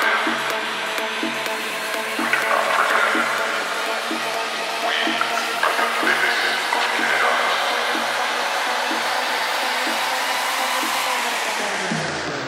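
Techno track in a breakdown with the kick drum out: a thick wash of noise sits over a steady ticking percussion pattern of about two ticks a second, with a few short synth stabs. Near the end a filter sweeps the highs down.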